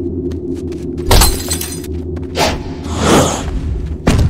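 Cartoon fight sound effects: a loud crash with a glassy, shattering ring about a second in, then two shorter noisy hits, over a steady low music bed.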